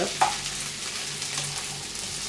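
Chopped flat beans (avarakkai) frying in a nonstick pan and being stirred with a wooden spatula: a steady sizzle with the scrape and shuffle of the beans being turned.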